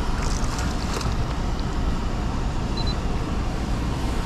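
Steady low rumble of wind buffeting the microphone while a small smallmouth bass is reeled in on a spinning rod, with a few light splashes in the first second.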